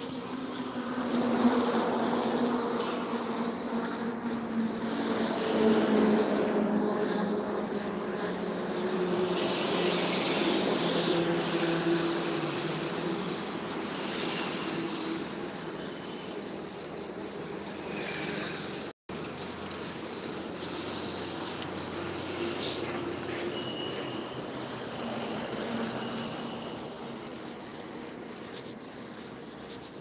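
A motor vehicle's engine running, with road noise. Its low engine note slides slowly down in pitch over the first dozen seconds, then the sound grows quieter. There is a split-second cut-out about two-thirds of the way in.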